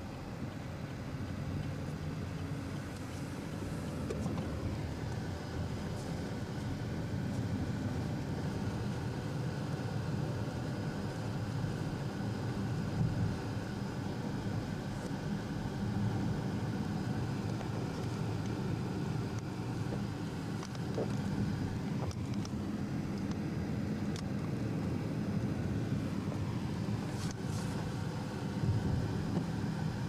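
Car cabin noise while driving: a steady low rumble of engine and tyres on the road.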